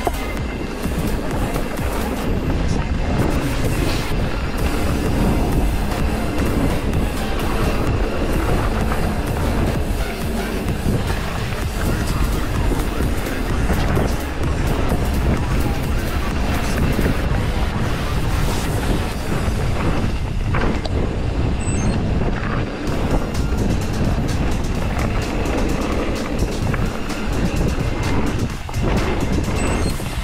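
Mountain bike ridden fast along a forest dirt trail: a steady, loud rush of wind on the body-mounted camera's microphone, mixed with tyre noise on the dirt and the rattle of the bike.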